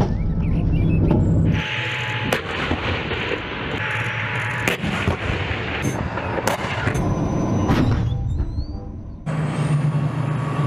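Battle tank's main gun firing with a loud blast, followed by the tank's engine rumbling as it drives, with a few more sharp cracks along the way.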